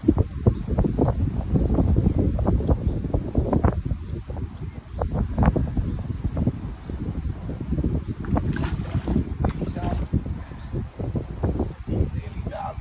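Wind buffeting the phone's microphone, a heavy low rumble that comes and goes in gusts.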